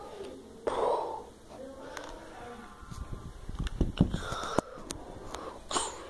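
A voice making breathy, hissing fight sound effects in short bursts, one just under a second in and another near the end, while plastic action figures are handled, with a run of sharp clicks and knocks from the toys in the middle.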